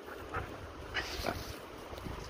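A dog making a few short, quiet sounds.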